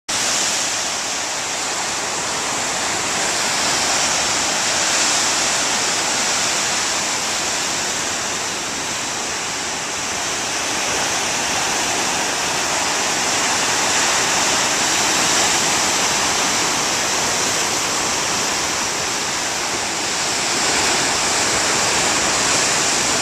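Ocean surf breaking and churning over rocks: a loud, steady rush of white water that swells gently every several seconds.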